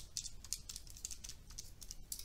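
Faint, quick clicks of calculator buttons being pressed, about a dozen in a row, as a division is keyed in.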